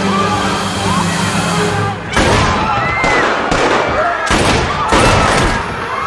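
Film-soundtrack gunfire: a volley of pistol shots, sharp cracks coming in several bursts from about two seconds in, with voices crying out between them. An orchestral score plays underneath.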